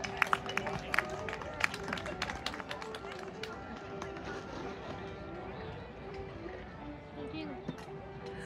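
Scattered clapping from spectators during the first few seconds, applause for a throw, over outdoor crowd voices and music.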